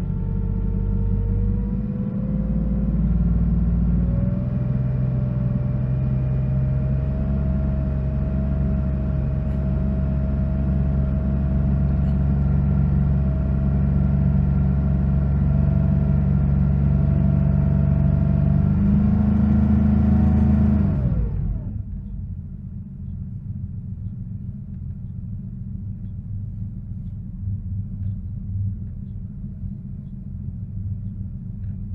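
Porsche 930's air-cooled turbocharged flat-six running at raised revs, its pitch climbing over the first several seconds and then holding steady. About two-thirds of the way through the revs drop quickly and it settles into a lower, quieter idle.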